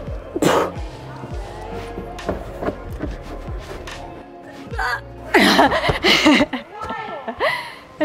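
A climber's strained cries and breaths over background music: a sharp breath about half a second in, then loud effortful yells about five and a half to six and a half seconds in as she pushes through a hard bouldering move and comes off the wall.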